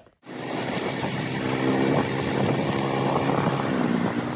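Motorcycle engine running at a steady cruise, heard from on board while riding along a road. It starts about a quarter of a second in, after a brief silence.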